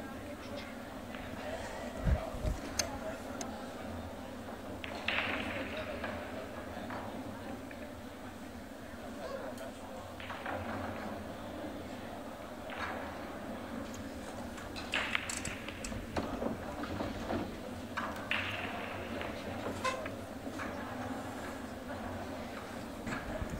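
Quiet pool-hall room tone with faint background voices, broken by a few sharp clicks as a shot is played: the cue tip striking the cue ball and the balls knocking together. Most of the clicks come in the second half.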